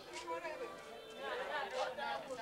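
Several women's voices chatting and talking over one another while they work, in a language the recogniser did not transcribe.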